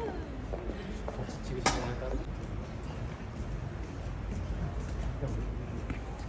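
Indistinct voices of people talking nearby over a steady low rumble, with one sharp click a little under two seconds in.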